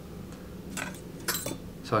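Two light metallic clinks of small metal objects being handled at a fly-tying bench, the second about half a second after the first and ringing briefly.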